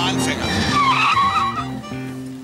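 A car's tyres squeal briefly with a wavering pitch, about half a second to a second and a half in, over sustained low notes of a music score. The sound drops away near the end.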